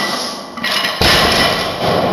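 A loaded barbell with bumper plates set down on a rubber gym floor at the end of a deadlift rep: one heavy thud about a second in, with a clatter and ringing of the plates and bar after it.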